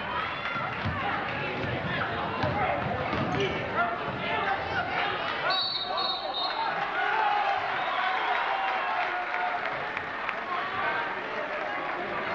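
Basketball bouncing on a hardwood gym floor amid crowd chatter and shouting, with a referee's whistle blown in about three short blasts around the middle.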